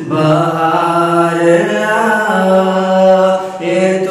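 A solo male voice sings a naat, an Urdu devotional song in praise of the Prophet, in long held notes that step and turn from pitch to pitch. A short pause for breath comes near the end before the next phrase starts.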